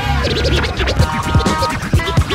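Hip-hop beat with DJ turntable scratching: quick back-and-forth sweeps over a steady drum pattern, with no rapping.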